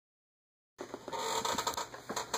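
Silence for a moment, then rustling and small irregular knocks of a handheld camera phone being picked up and swung around.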